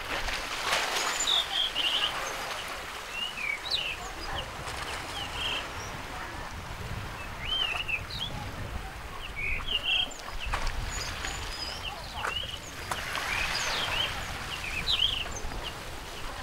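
Small birds calling: a scattering of short chirps and quick rising-and-falling whistles, over a steady hiss of wind and sea.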